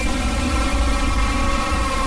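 Explosion sound effect: a sudden, loud, dense rumbling noise that holds steady, with music tones still audible underneath.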